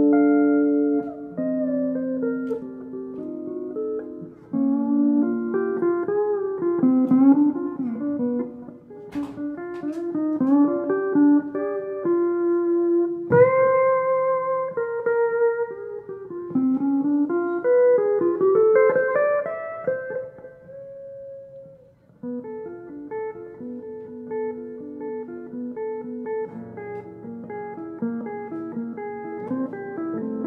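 Guitar playing an instrumental tune, a melody of plucked notes over lower chords. It drops out briefly about two-thirds of the way through and comes back more softly.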